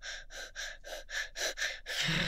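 A woman panting like a dog: quick, breathy open-mouthed puffs at about five a second, with no voiced tone.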